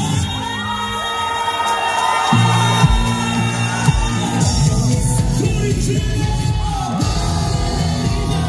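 A male singer belting a held, soaring melody live over a pop band through a concert sound system. The bass and drums drop out for the first two seconds or so, then come back in. Crowd cheers are mixed in.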